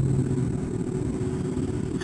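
A low, steady background rumble with no clear rhythm or strokes, in a pause between speech.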